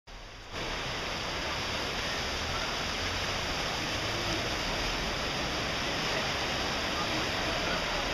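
Floodwater rushing along a street, a steady loud noise that starts about half a second in.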